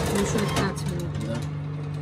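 Steady electric hum of a convection oven's fan motor running with the oven door open.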